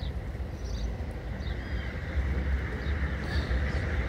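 Outdoor ambience: a steady low rumble with several short, high bird chirps scattered over it.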